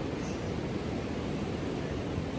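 Steady, even noise of sea surf and wind at a beach, with no distinct events.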